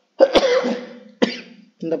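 A man coughing and clearing his throat: one cough with a voiced trail about a quarter second in, then a second, shorter cough just after a second in.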